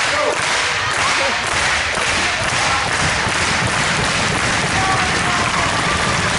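Gym crowd clapping together in a steady rhythm, about two claps a second, over a loud crowd din.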